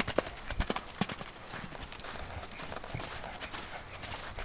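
A horse's hoofbeats as it canters on a lunge line over soft sand-and-mud arena footing, with a few sharper strikes in the first second.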